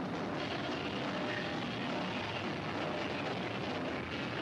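Hardcore punk band playing live at full volume, heard as a dense, distorted wall of sound in which the drums are hard to pick out.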